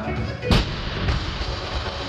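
A loaded barbell with bumper plates dropped onto the gym floor: one loud thud about half a second in, then a smaller bounce about half a second later. Background music plays throughout.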